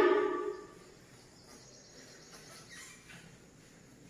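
Felt board duster wiping across a chalkboard: faint, soft rubbing strokes, after a woman's voice trails off in the first half-second.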